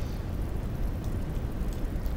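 Steady background hiss with a low hum underneath: the open microphone's noise floor between spoken sentences.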